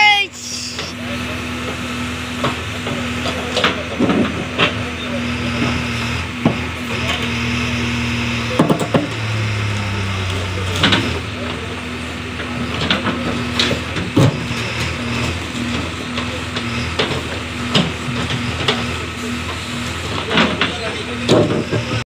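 Backhoe digger's diesel engine running steadily, its note shifting briefly about halfway through, with scattered knocks and scrapes from the bucket working through earth, stones and broken paving slabs.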